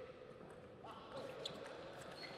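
Table tennis ball struck by rackets and bouncing on the table during a rally, a few sharp clicks in the second half, over the murmur of voices in the hall.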